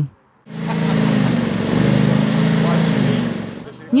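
A small engine running steadily, like a lawn mower, with a hissing noise over a low hum; it starts about half a second in and fades away near the end.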